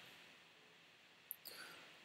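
Near silence, broken by one faint, short click a little past the middle: a computer mouse button being clicked.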